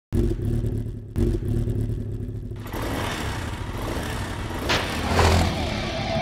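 Motorcycle engine sound effect: the engine comes in abruptly with a low, pulsing note, then revs up into a louder, rougher noise about two and a half seconds in, with a brief rising whine near the end.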